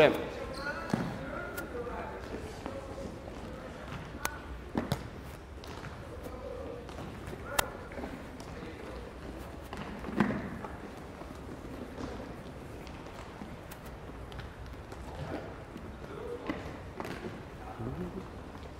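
Soccer balls being kicked and bouncing on a hardwood gymnasium floor: scattered sharp thumps, the sharpest about halfway through and another a couple of seconds later, with faint voices in the background.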